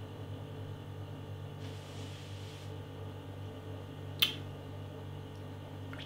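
Quiet room tone with a steady low hum while a man drinks beer from a glass: a soft breathy rush about two seconds in, and one sharp click a little after four seconds.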